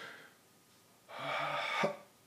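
A man's short, breathy, faintly voiced exhalation, a soft 'haah' starting about a second in and lasting under a second. It is a singer's demonstration of stopping the breath on the diaphragm, the 'breath stop'.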